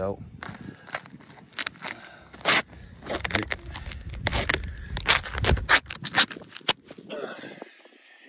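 Plastic stretch wrap on a silage bale crackling and scraping as a hand presses and rubs an adhesive patch down over a hole, a fast irregular run of sharp crinkles.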